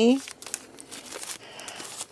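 Clear plastic card sleeves crinkling and crackling in the hands as a bagged stack of handmade cards is picked up and handled, in irregular crackles.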